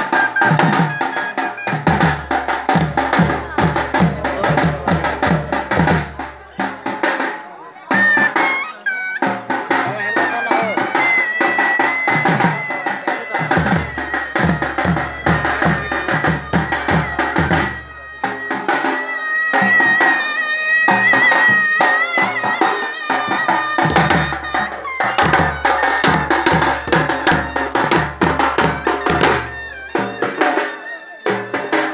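Live traditional folk music: drums beaten in fast, even strokes, with a deeper beat that comes in and out three times. A high, held and wavering melody line runs over the drumming through the middle stretch.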